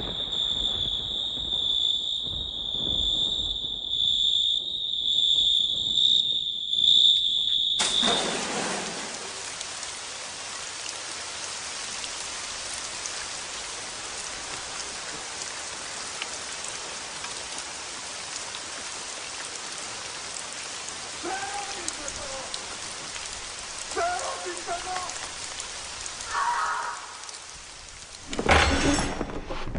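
A steady high-pitched insect-like trill stops suddenly about eight seconds in and gives way to a steady rain-like hiss. A few short pitched calls sound over the hiss near the end.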